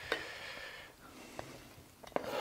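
Plastic lid being pressed and worked onto a stainless steel mixing bowl to seal it: faint rubbing with two small clicks, one at the start and one about a second and a half in.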